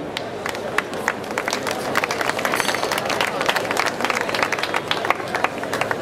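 Irish dance heavy shoes (hard shoes with fibreglass tips and hollow heels) clicking and knocking on a wooden stage as dancers walk into position: many irregular sharp taps.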